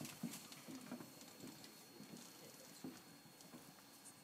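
Near silence with faint, irregular footsteps and shuffling.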